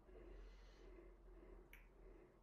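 Near silence: room tone, with one short sharp click near the end.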